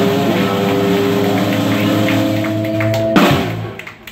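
Live blues band of electric guitars and drum kit holding a final chord, ended by a sharp drum and cymbal hit about three seconds in, after which the sound dies away.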